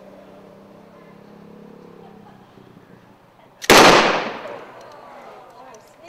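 Fast-draw single-action revolvers fired by two shooters almost at once, heard as one loud sharp report about two-thirds of the way in that fades over about a second.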